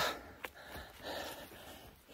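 A man breathing hard into a phone microphone while hiking uphill: a few soft, noisy breaths, with a short click about half a second in.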